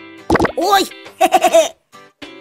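Cartoon character's short wordless vocal sounds, three of them, the last one wavering, with a few small bubble-pop plops, over light children's background music.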